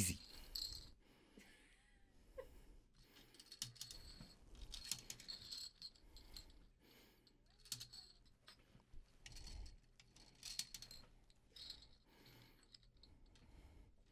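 Faint, scattered clicks and rattles of plastic Connect Four checkers being handled and dropped into the upright plastic grid, a second or two apart.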